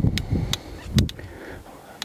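Footsteps on rocky, gravelly ground: three sharp crunches with dull thuds under them in the first second, then quieter.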